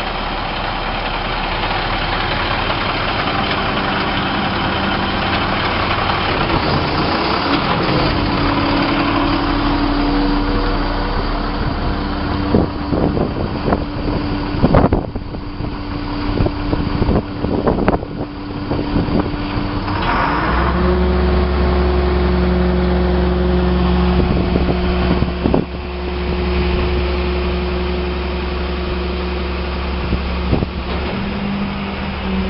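International 7400 packer truck's diesel engine running steadily; its pitch steps up about eight seconds in and again about twenty seconds in. Between about twelve and twenty seconds there is a series of sharp clunks and knocks.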